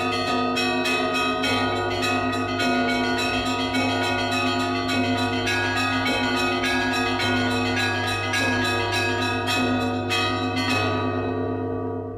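Orthodox church bells ringing together: several bells of different pitches struck in quick succession, about three or four strikes a second. The striking stops near the end and the bells ring on, fading away.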